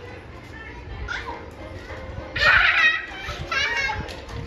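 A toddler's high-pitched voice: two loud excited calls, one about halfway through and a shorter one near the end.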